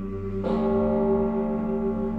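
A bell struck once about half a second in, its many ringing tones sustained over a steady low drone.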